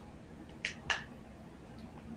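Two short, sharp clicks about a quarter of a second apart, the second louder, over faint room tone with a low hum.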